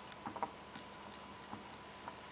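Felt-tip whiteboard marker writing on a whiteboard: a few faint, irregular ticks and taps as the pen strokes out letters and symbols.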